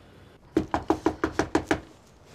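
Rapid knocking on a front door, about nine quick knocks in just over a second.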